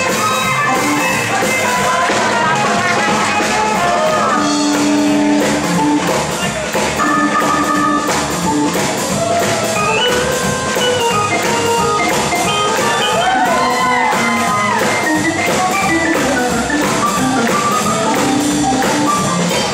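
Swing jazz band music with drums keeping a steady beat under held instrument notes.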